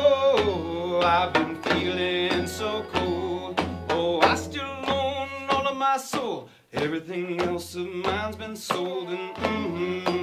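A man singing over a strummed acoustic guitar. About six and a half seconds in, the music breaks off briefly as the voice slides down, then picks up again.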